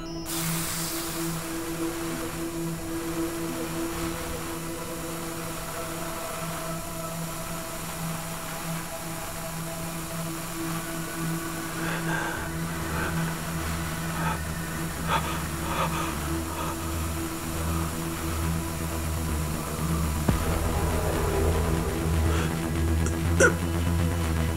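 Tense suspense score: a steady held drone, joined about halfway by a pulsing low bass, with a few sharp hits near the end.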